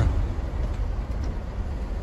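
Steady low rumble of a vehicle heard from inside its cabin: engine and road noise.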